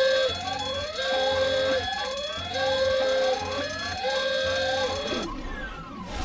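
Home alarm system siren going off even though the panel reads the system unarmed, a false alarm from the faulty system. A held tone alternates with rising whoops, repeating about every second and a half. About five seconds in it stops by itself with a falling tone.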